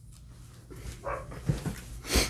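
A short, faint yelp-like call about a second in, followed by a couple of soft low knocks.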